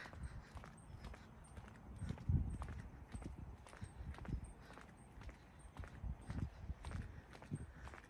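Faint footsteps on a concrete path, a series of light irregular steps, with irregular low rumbling swells under them.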